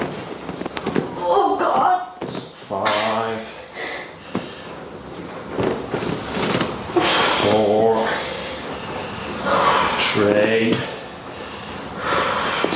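A person's short pained vocal sounds, about four brief groans with breathy exhalations between them, as deep tissue pressure is held on the back of the upper leg.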